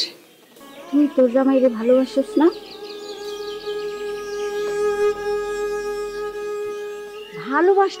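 A woman speaks briefly, then background music holds one long, steady note for several seconds. Another voice starts speaking near the end.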